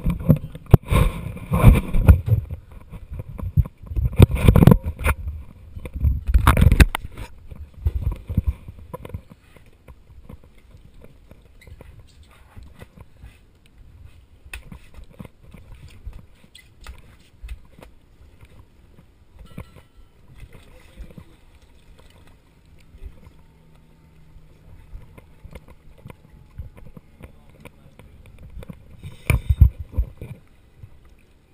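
Wearable action camera rubbing and knocking against scuba gear for the first several seconds, loud and irregular. This gives way to quiet, scattered clicks on the dive boat deck, with a faint steady low hum joining about two thirds of the way in, and a brief loud burst near the end.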